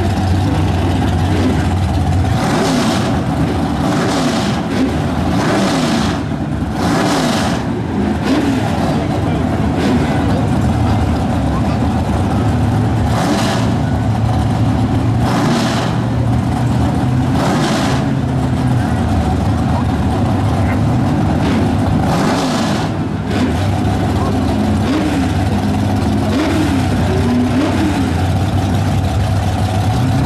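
Two drag-race cars idling loudly at the starting line, with a series of short throttle blips, several in the first eight seconds and a few more spread out later, over crowd chatter.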